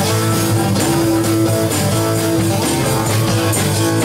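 Live blues band playing with no singing: a strummed acoustic-electric guitar over double bass.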